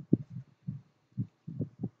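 About half a dozen dull, low thuds at irregular intervals: handling noise as disc cases are shifted about and knocked against a desk.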